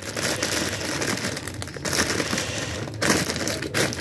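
Plastic food packaging crinkling and rustling as it is handled and stacked onto a shelf, a near-continuous crackle with short breaks about two and three seconds in.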